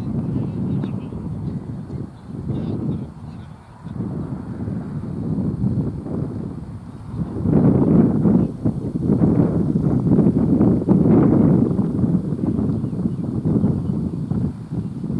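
Wind buffeting the camera microphone in uneven gusts, stronger from about halfway, with faint calls from players on the field.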